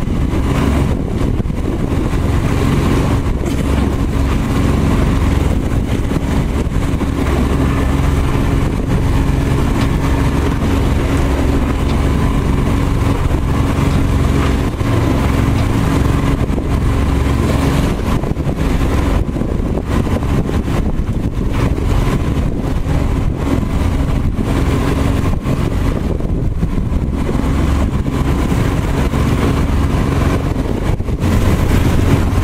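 A boat's engine running steadily under way: a continuous low drone with a steady hum.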